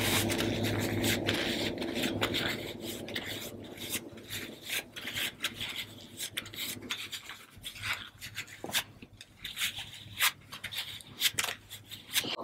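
A wet cloth rubbing and scrubbing a gram-flour paste off facial skin: a continuous rub that fades over the first few seconds, then a run of short separate wiping strokes.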